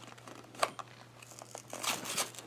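Faint crinkling and rustling of a foil candy wrapper and paper sticker packet being handled, with a single sharper tick about half a second in and livelier crinkling near the end.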